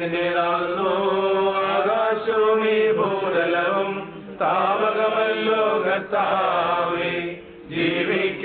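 Priests chanting a funeral prayer in slow, sustained sung phrases, pausing briefly about four seconds in and again near the end.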